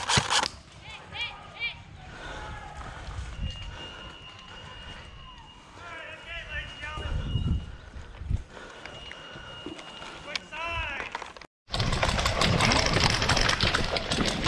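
Distant shouts from players across an open field, with a faint steady high tone twice in the middle. After a sudden break near the end comes a loud, close run of rapid rattling and clicking.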